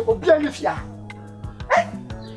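A man's voice over background music with a steady beat. Near the end there is a short, sharp, bark-like cry.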